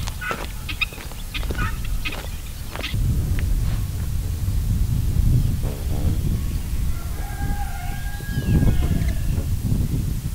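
Fowl calling: several short calls in the first few seconds and one long drawn-out call lasting over a second about seven seconds in, over a steady low rumble.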